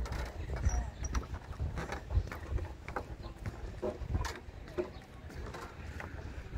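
Footsteps on the wooden planks of a lake dock, a series of irregular knocks, with wind rumbling on the microphone.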